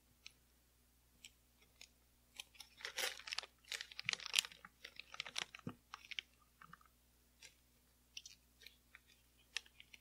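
Thick styling gel squeezed from a disposable plastic piping bag into a glass bottle: quick soft crackling and squelching of the plastic bag and gel, busiest from about two and a half to six seconds in, then sparser.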